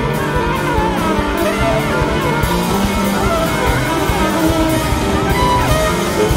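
Live rock band playing: guitar lines with bending notes over bass and drums.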